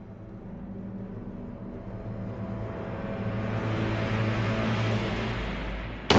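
A low sustained drone in the anime's dramatic score, swelling steadily louder with a rising hiss during a pause in the dialogue, then cutting off abruptly at the end.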